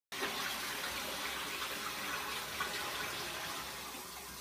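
Water running steadily in a continuous, even flow.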